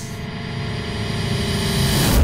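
Dramatic background-score riser: a swell of noise and sustained tones that builds steadily louder, ending in a deep hit as tense music comes in.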